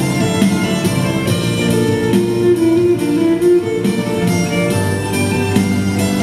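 Electric violin bowed in a melody, with a longer held note in the middle, over an electronic dubstep/drum-and-bass backing track with a steady beat.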